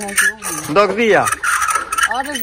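Domestic fowl calling loudly: pitched calls, one sweeping sharply down in pitch about a second in, followed by a steadier high note.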